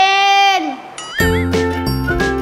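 A child's drawn-out whining cry, held on one pitch and falling away after about half a second. About a second in, a short wavering chime-like sound effect sounds, and then background music with a steady bass line starts.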